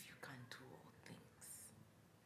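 A woman whispering faintly, with a short hiss of breath about one and a half seconds in.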